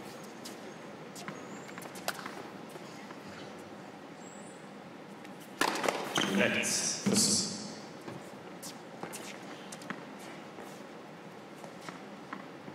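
Tennis ball bounced a few times on an indoor hard court before the serve, as faint separate knocks. About five and a half seconds in a sharp racket strike starts a short rally, with voices and further ball strikes for about two seconds, then scattered knocks again.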